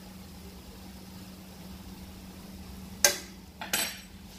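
Two short, sharp kitchen clatters against a large aluminium cooking pot, the first about three seconds in and a second just under a second later, over a steady low hum.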